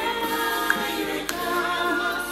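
Recorded gospel song with a choir singing, several voices together.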